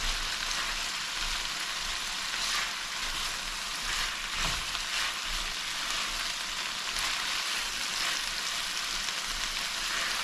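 Salt fish and chopped vegetables frying in olive oil in an enamelled cast-iron pan: a steady sizzle, with the soft scrape of a silicone spatula stirring now and then.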